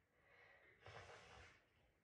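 Near silence, with one faint, short breath from the boy about a second in.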